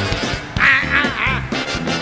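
Live funk-soul band music: a steady groove with short, bending cries laid over it between about half a second and a second and a half in.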